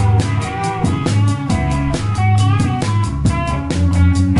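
A live instrumental trio playing: electric guitar, bass guitar and drum kit, with the drums keeping a steady, even run of strokes over held bass notes and guitar lines.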